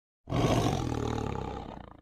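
One long tiger roar as a sound effect. It starts about a quarter of a second in, is loudest at its onset and fades away near the end.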